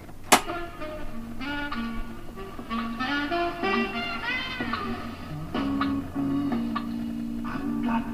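A sharp click as the 1964 Peto Scott valve reel-to-reel tape recorder's control lever is switched to play. Then recorded music plays back from the tape through the machine's own speaker, read by its original tape head.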